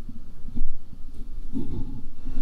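A person breathing close to a microphone, with two louder low bumps, about half a second in and again at about one and a half seconds.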